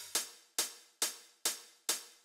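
Drum-machine closed hi-hat playing on its own in a steady pattern, five short sharp ticks about two a second, each dying away quickly. It is a hi-hat sample time-compressed in Ableton Live's Beats warp mode.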